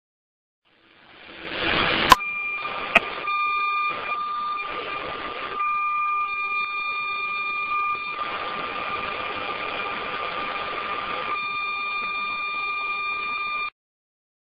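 A steady, high-pitched electronic alarm tone over a rushing hiss. Two sharp clicks sound about two and three seconds in, the tone comes in with them, and the sound cuts off suddenly near the end.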